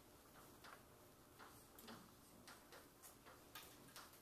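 Chalk tapping on a blackboard while writing: faint, irregular clicks, about a dozen in a few seconds.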